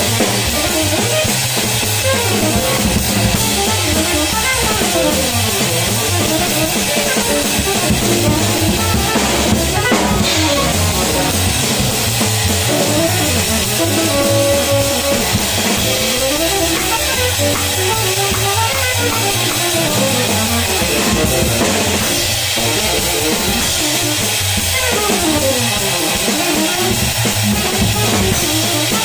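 Jazz combo playing a fast tune: a drum kit played with sticks, close and loud, with guitar and double bass, under a solo line of fast rising and falling runs.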